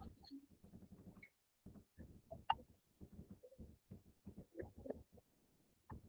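Faint computer keyboard typing: scattered soft keystroke clicks as a terminal command is typed and entered.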